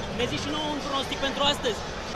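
Indistinct chatter of several people talking over one another, over a steady background murmur.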